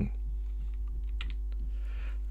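Steady low electrical hum with a few faint clicks about a second in.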